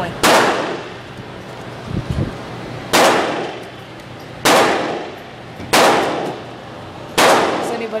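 .22 pistol fired five times at an uneven pace, each shot a sharp crack followed by a ringing echo off the walls of an indoor range.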